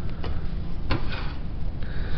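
Metal sheet being handled and slid on the guillotine's flat steel bed, with two sharp clicks, one about a quarter second in and one about a second in, over a steady low hum.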